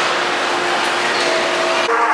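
Tornado vortex exhibit's fans blowing a steady rush of air with a steady hum under it, cutting off suddenly near the end.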